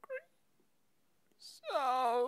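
A cat meowing: a short meow right at the start, then a long, drawn-out meow that begins about one and a half seconds in.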